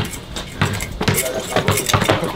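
Basketball being dribbled on a hard outdoor court: a run of quick bounces, roughly two a second.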